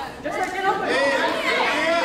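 Many voices of players and onlookers calling out and chattering over one another, echoing in a school gymnasium during a basketball game.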